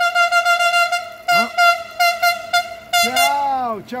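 Horn of an approaching Siemens EuroSprinter electric locomotive: one long single-pitched blast that wavers rapidly and stops about two and a half seconds in. A voice calls out near the end.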